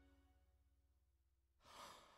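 Near silence as a Yamaha Tyros 5 keyboard accompaniment ends: a faint tail of held notes fades away, then a brief soft rush of noise comes near the end.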